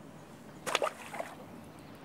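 Short splashes of water about two-thirds of a second in, and a smaller one just after a second, as a freshly caught silver bream is handled and let go at the water's edge.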